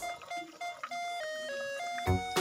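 Background music: the beat drops out and a simple melody of clear single notes plays on its own, with the full beat coming back right at the end.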